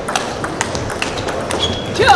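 Table tennis rally: a quick series of sharp clicks as the ball is struck by the rackets and bounces on the table, over the steady background of a sports hall.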